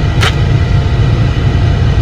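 Steady low rumble of a car's cabin noise, with a brief hiss about a quarter second in.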